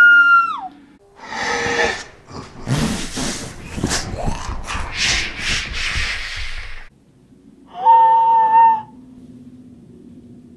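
A boy's high-pitched scream, held and then falling off. Several seconds of harsh, breathy noise follow. A second, shorter and lower scream comes about eight seconds in, then a faint low hum.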